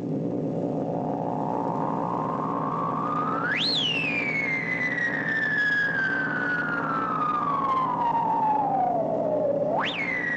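An electronic instrument's single gliding tone. It climbs slowly, shoots up high about three and a half seconds in, slides slowly down for about six seconds, then shoots up again near the end, over a steady low drone.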